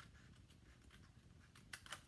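Quiet scissor snips through patterned paper on an envelope flap, with two sharper snips close together near the end.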